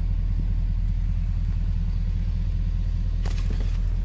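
Ford 6.7 L Power Stroke V8 turbodiesel idling steadily, a low, evenly pulsing rumble heard from inside the cab. A brief sharp noise comes a little past three seconds in.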